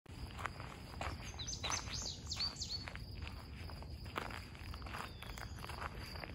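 Footsteps along a forest trail, one about every half second, with a burst of quick high bird chirps in the first half.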